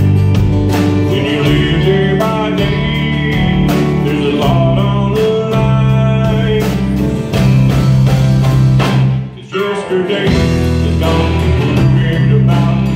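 A live band of acoustic guitar, electric guitar, bass, keyboard and drums playing a song, with a man singing the lead vocal. The band drops out for a moment about nine and a half seconds in, then comes back in.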